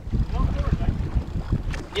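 Low rumble of a boat motoring slowly forward, with wind buffeting the microphone and water washing along the hull.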